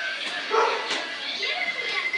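A dog barking a few short times.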